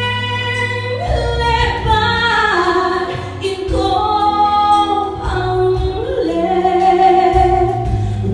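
A woman singing a solo gospel song into a handheld microphone, holding long notes, over low sustained accompaniment.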